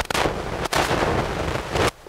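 Loud crackling rustle on the microphone, like cloth rubbing against it, lasting nearly two seconds with a brief break a little over half a second in, then cutting off suddenly.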